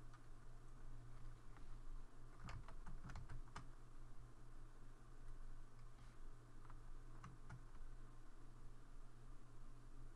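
Faint clicking of computer keys, a quick cluster of keystrokes a few seconds in and a few scattered ones later, over a low steady hum.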